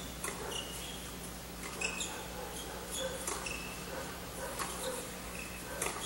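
Tennis rally: racket strikes on the ball about every one to one and a half seconds, with short high squeaks of players' shoes on the court between the shots, over a steady low hum.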